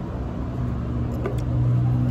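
A motor vehicle's engine running nearby, a steady low hum that grows a little louder toward the end.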